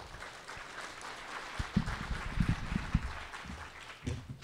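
Audience applauding, with a few low thuds between about one and a half and three seconds in.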